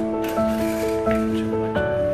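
Background music: a melody of held, sustained notes that change pitch several times.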